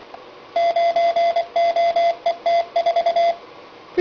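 Yaesu FT-1900 2-meter radio's CW training mode sending random letters and numbers in Morse code: a single beep tone keyed on and off in dots and dashes from the radio's speaker, starting about half a second in and stopping shortly before the end.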